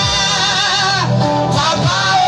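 Gospel singing by a group of singers with instrumental backing, amplified, with held notes that waver in pitch.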